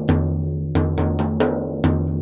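Hand-played Roosebeck hybrid tunable frame drum: a deep ringing bass stroke at the start and another near the end, with about four lighter, sharper strokes in between.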